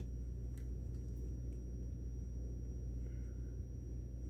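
Quiet room tone: a steady low electrical hum with a faint thin high whine above it, and a few faint ticks.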